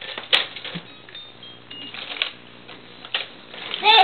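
Scattered light clicks and knocks from a baby's hanging jumper seat and its toy tray as the baby moves in it, with the baby's high babbling voice starting at the very end.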